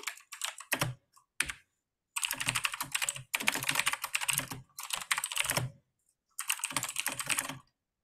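Fast typing on a computer keyboard, in four or five quick runs of keystrokes separated by brief pauses.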